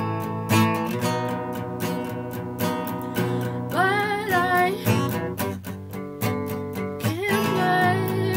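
Acoustic guitar with a capo, strummed steadily in rhythm. A woman's singing voice comes in about halfway through for a short phrase, and again near the end.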